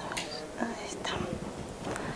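Soft, indistinct speech from a person, well below the level of the talk around it.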